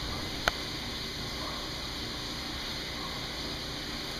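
Steady noise of a submerged E/One 1-horsepower grinder pump running in a test tank as it grinds a cotton t-shirt, with one sharp click about half a second in.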